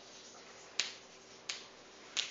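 Two sharp clicks, just under a second in and again about half a second later, over faint room hiss.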